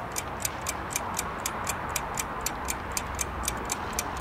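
Ticking-clock sound effect, an even run of sharp ticks about four a second, marking a pause for the viewer to answer. A steady low hiss runs underneath.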